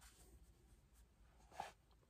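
Near silence, with one faint, brief sound about a second and a half in.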